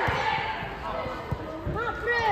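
Shouted calls from players and the sideline, with a few dull thuds of a football being kicked on artificial turf.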